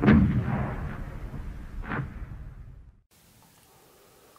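Sound-effect gunfire booms in a logo intro: a heavy hit at the start and a sharper one about two seconds in, each dying away in a low rumble until the sound stops about three seconds in.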